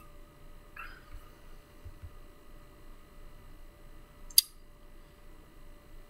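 Quiet room tone with a faint steady hum, and a single sharp laptop touchpad click a little over four seconds in.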